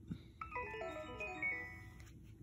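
Fisher-Price talking leopard plush toy's speaker playing a short electronic chime jingle: a quick run of bell-like notes, mostly stepping downward, each ringing on.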